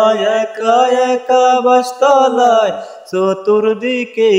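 A solo voice singing a Bengali Islamic gojol in long held notes that slide and waver in pitch, with a brief break between phrases about three seconds in.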